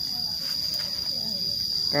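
A steady, unbroken high-pitched insect drone, typical of crickets or cicadas, in the background.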